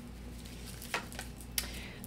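Tarot cards being handled and drawn from the deck: three light clicks in the second half, over a faint low hum.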